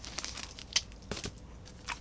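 Faint crinkling and rustling of a plastic outer sleeve on an LP record jacket as the album is handled and set down, with several light ticks scattered through.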